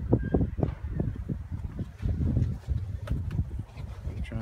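Irregular low rumble and soft knocks from a phone's microphone being handled and carried while walking.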